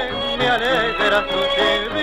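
Tango orchestra recording playing a melody with vibrato over a steady accompaniment, with no sung words.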